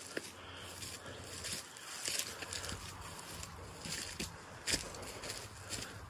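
Quiet footsteps through grass and leaf litter, a scattering of soft irregular steps and rustles over a faint outdoor background.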